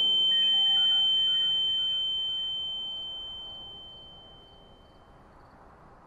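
A single steady high-pitched electronic ringing tone, a drama sound effect for the numb shock of the news. It holds for about a second, then slowly fades out over the next few seconds.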